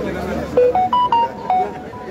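A short tune of about six clear, quick notes, mostly stepping upward in pitch, starting about half a second in and ending near the end, over crowd chatter.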